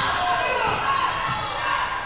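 Voices calling and shouting across a gymnasium during a basketball game, with low thuds of a basketball bouncing on the hardwood floor.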